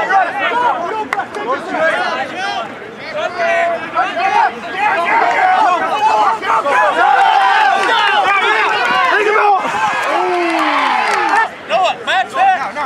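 Rugby sideline crowd and players shouting and cheering over one another, loud and continuous, easing off briefly near the end.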